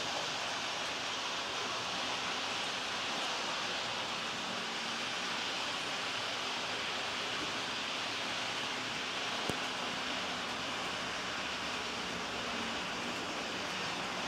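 H0-scale model train (Liliput BR 01.10 steam locomotive with coaches) running along the track: a steady whirr and rolling hiss from the motor and wheels, with a single click about nine and a half seconds in.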